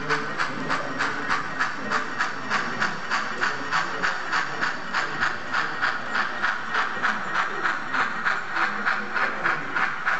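Sound-equipped model steam locomotive running with a steady, even chuff of hissing exhaust beats, about three a second, from its onboard sound speaker.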